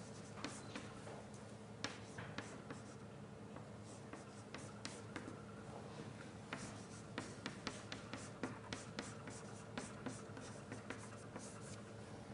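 Writing by hand on a lecture board: an irregular run of short taps and scratches, over a steady low room hum.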